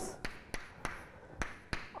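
Chalk tapping and scratching on a blackboard as letters are written: about five short, sharp clicks spread across a couple of seconds.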